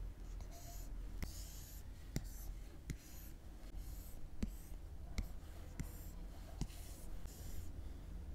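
Stylus nib tapping and sliding on an iPad's glass screen while drawing. Sharp ticks come at irregular intervals, about once a second as the tip touches down, with soft scratchy strokes between them.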